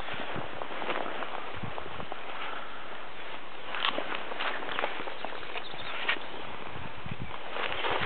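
Footsteps and rustling on grass over a steady background hiss, with a few short taps scattered through.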